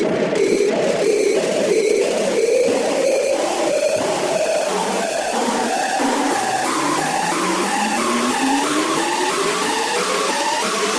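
Hard-style electronic dance music from a DJ mix, loud, with a steady beat; from about six seconds in, a tone sweeps steadily upward in pitch as a build-up riser.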